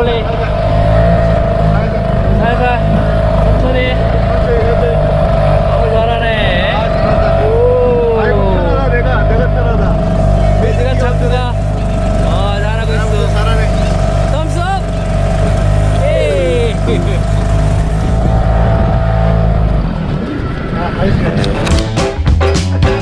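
Motorboat engine running steadily under way, a constant drone with a steady whine, and children's voices over it. The engine sound falls away about two seconds before the end.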